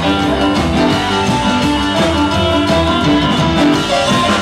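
Live rockabilly band playing an instrumental passage with no vocals: upright double bass, drum kit and electric guitar, with keyboard.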